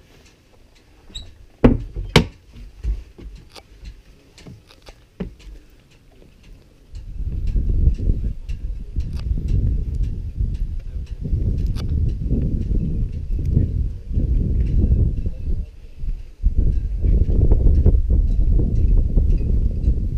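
A few sharp knocks in the first seconds, then from about seven seconds in a low, uneven rumble of wind buffeting the camera microphone.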